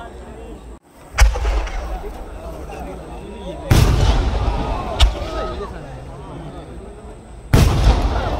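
Aerial fireworks shells exploding in four loud bangs: one about a second in, a heavier boom near four seconds, a sharp crack at five seconds and another heavy boom just before the end, each trailing off in a rolling rumble.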